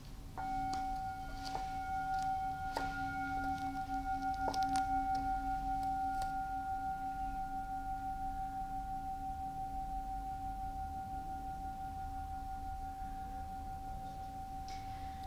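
Singing bowl sounded once about half a second in, ringing with a pulsing hum of several steady tones that swells over the first few seconds and then slowly fades.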